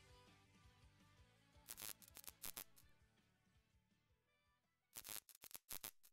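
Faint glitchy digital static from a video's glitch-effect intro: two short clusters of crackling bursts, about two seconds in and again near the end, over near silence.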